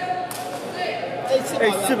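A man speaking over the chatter of a crowd, in the echo of a large covered hall.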